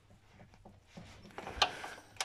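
Socket ratchet clicking a few times at an uneven pace as it is worked to tighten the bolt of a new accessory-belt tensioner pulley. One click about one and a half seconds in is louder than the rest.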